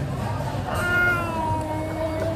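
A toddler's long drawn-out vocal sound: one held note, sliding slightly down in pitch, starting about three-quarters of a second in and lasting over a second.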